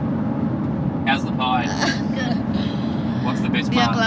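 Steady low road and engine rumble inside a moving car's cabin, with voices speaking briefly about a second in and again near the end.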